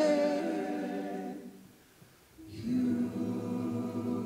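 Men's choir holding a chord that dies away to a brief pause about halfway through, then coming back in on a new sustained chord.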